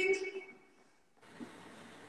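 The end of a spoken phrase fades into a pause of near silence, then a faint steady hiss of open-microphone line noise switches on suddenly a little over a second in.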